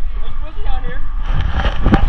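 Wind buffeting an action camera's microphone: a steady low rumble, swelling into a louder rush of noise in the second half with a knock near the end, under faint voices.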